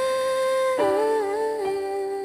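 Slow OPM love ballad: a female voice holds a long note, then steps down to a lower note about a second in with a brief waver before holding it, over sustained electric piano.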